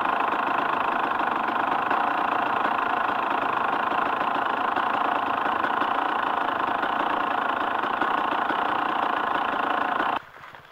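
Dirt bike engine running steadily at an unchanging pitch, without revving.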